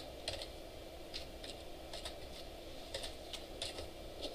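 Computer keyboard being typed on: a dozen or so separate keystrokes at an uneven pace, over a steady low room hum.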